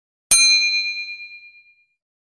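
A single bright bell-like ding, struck about a third of a second in, rings with several clear tones and fades out over about a second and a half. It is a video-editing sound effect that introduces a title card.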